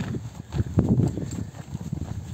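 Footsteps of a hiker walking at a steady pace on a dirt and gravel track, a low thud with each step and a louder stretch about a second in.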